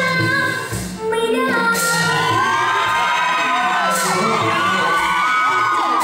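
A woman singing Thai likay folk opera into a microphone, over musical accompaniment. From about two seconds in, many audience voices shout and cheer together over the music.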